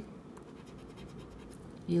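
A plastic scratcher scraping the latex coating off a lottery scratch-off ticket, uncovering a number: a run of faint, quick scratching strokes.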